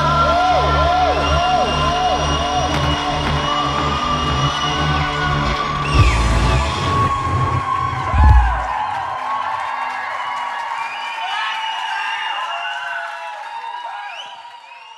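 A rock band's closing chord ringing out with heavy bass, ended by two low final hits about six and eight seconds in. The music then stops and an audience cheers and whoops, fading near the end.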